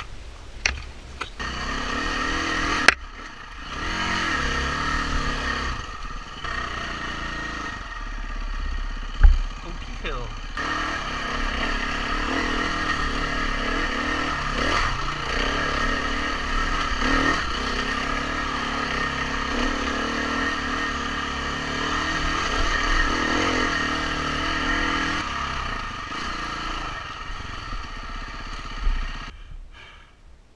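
2016 KTM 350 EXC-F dirt bike's single-cylinder four-stroke engine being ridden off-road, its revs rising and falling with the throttle, with sharp knocks about three and nine seconds in. Near the end the engine drops back to a quieter idle.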